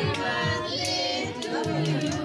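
Girls singing along loudly to music with a steady beat.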